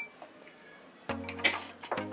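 A spoon clinks once against a glass bowl while stirring thick batter. About a second in, background music with a steady beat starts and is the loudest sound.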